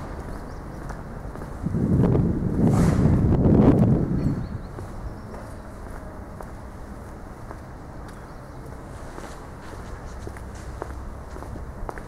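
Footsteps on paving stones while walking. About two seconds in, a loud, low rumbling noise rises for about two seconds before dying away.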